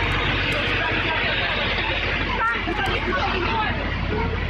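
A vehicle engine running with a steady low hum, under the babble of a crowd of people talking at the scene.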